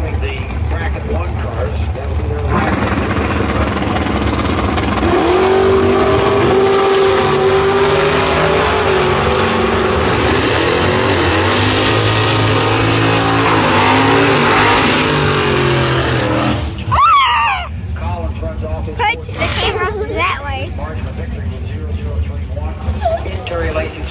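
Engines of two drag racing cars at the starting line running at high revs for about fourteen seconds, pitch climbing and falling as they rev and launch, then dropping away suddenly. A public-address announcer's voice follows.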